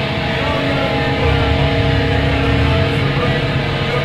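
A live hardcore band playing loud distorted electric guitars and bass in steady, sustained chords, with no break.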